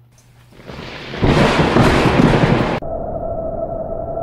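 Storm sound of wind and thunder that builds over about a second, stays loud, then cuts off abruptly, leaving a steady whistling tone over a lower rush of noise.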